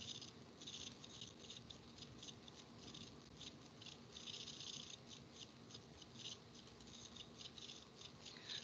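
Near silence: room tone with faint, irregular high clicks and rustles scattered throughout.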